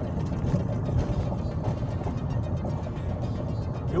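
Car interior rumble as the car rolls slowly over a stone-paved street: a steady low drone of engine and tyres, with many small irregular knocks from the stones.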